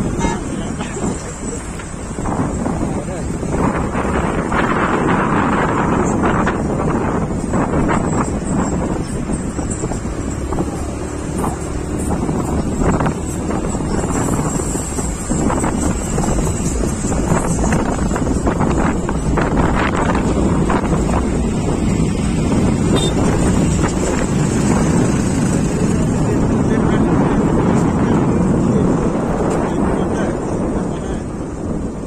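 Steady road and engine noise from riding in a moving car, with wind buffeting the microphone and indistinct voices mixed in.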